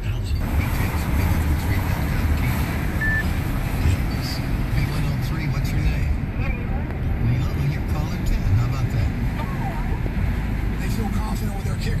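Car cabin noise while driving: a steady low rumble of engine and road from inside the moving car.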